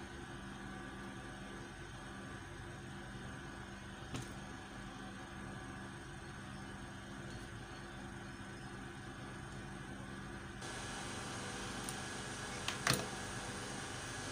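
Steady low room hum with an even hiss, with a faint click twice. The hiss grows a little louder about ten and a half seconds in.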